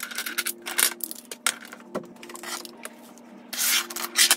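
Small plastic and metal makeup pots and compacts being handled, clicking and knocking as they are set down and slid across a wooden desk, with a louder scrape near the end.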